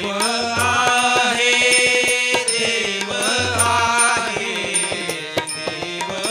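Marathi abhang bhajan: a man singing over a harmonium, with tabla strokes and taal hand cymbals keeping the rhythm.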